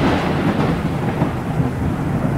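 Thunder rumbling in a long roll that slowly fades after a sharp clap.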